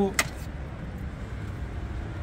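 Steady low background rumble, with one sharp click just after the start.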